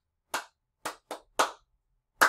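One person clapping hands, four sharp claps at uneven spacing.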